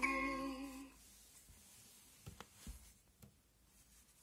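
Electronic singing voice of a Fisher-Price interactive plush puppy toy, holding a last note that stops about a second in. After that it is quiet apart from a few faint taps as the toy is handled.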